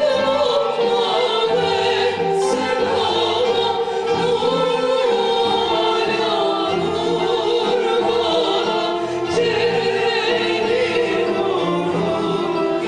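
Women singing a Turkish Sufi (tasavvuf) hymn, a lead voice joined by a small female chorus in long, sustained lines with vibrato. They are accompanied by a ney, a kanun and a bowed string instrument.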